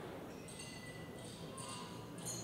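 Faint room ambience with a few light, high-pitched clicks.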